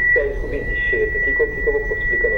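A steady high-pitched electronic tone comes on suddenly and holds at one unbroken pitch, with a voice talking faintly under it.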